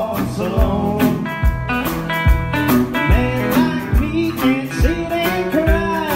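Live country band playing a song: upright bass plucking notes on the beat under drums and electric guitar.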